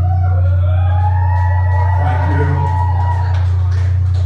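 A live rock band's amplified instruments ringing out as a song ends: a loud steady low bass drone, with a higher wavering tone sliding up near the start and held for about three seconds before it fades.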